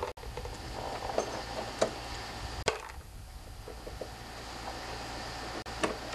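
Faint clicks and scrapes of a Phillips screwdriver turning out the screws that hold the grille on a lawn tractor's engine shroud, a few scattered ticks over a steady low hum.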